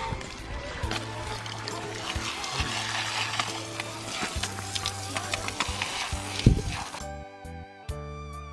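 Background music with a steady low bass over the hiss and splash of water running from a hose onto a pig carcass as it is scrubbed, with scattered clicks and a sharp knock about a second and a half before the end. The water stops a second before the end, leaving the music alone.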